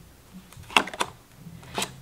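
Tarot cards being handled: a card drawn off the deck, giving three short sharp snaps, two close together in the middle and one near the end.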